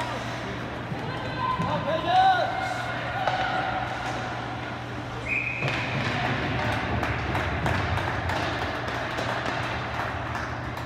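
Ice hockey rink sound: spectators' voices and shouts, with sticks and puck knocking on the ice and boards, over a steady hum from the arena. A short, high referee's whistle blast comes about five seconds in.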